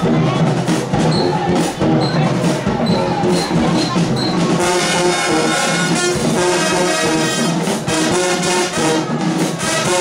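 High school marching band playing: brass over drums with a steady beat. The horns come in fuller about halfway through.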